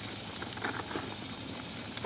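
Faint, steady outdoor background noise with a few soft rustles.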